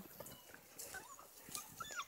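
Bluetick beagle puppies eating raw ground meat: faint chewing and smacking clicks, with two short high squeaks, one about a second in and one near the end.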